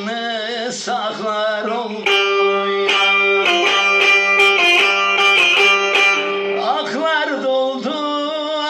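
Bağlama (long-necked saz) played with a steady drone and quick plucked notes. A man's voice holds a long, wavering sung note over it at the start and again near the end.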